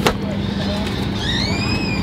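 Airliner cabin noise: a steady low rumble. A sharp click comes right at the start, and a high-pitched squeal rises and then falls in the second half.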